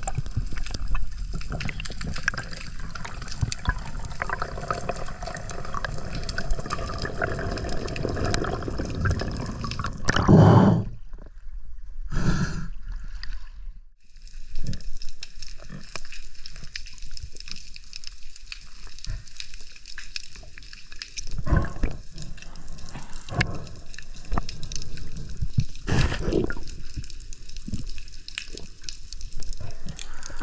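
Underwater sound through an action camera's housing during a freedive: a steady watery wash with scattered clicks and taps. Two louder whooshes come about ten and twelve seconds in, followed by a brief lull.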